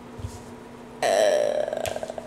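A person's loud, rattling throat sound starts suddenly about halfway through, its pitch wavering at first and then breaking into a rapid rattle.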